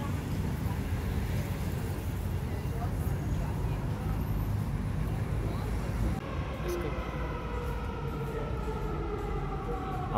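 Outdoor traffic rumble and wind on the microphone while walking. About six seconds in, this gives way to the steady hum of a metro train at an underground platform, with several tones held level.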